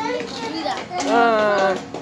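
Children's voices, with one child's loud, drawn-out wavering call about a second in, too indistinct to be words.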